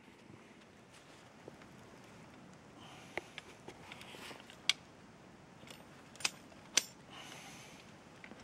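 Quiet rustling with a few sharp metallic clicks in the second half as a body-grip trap and its wire holding a dead fisher are handled.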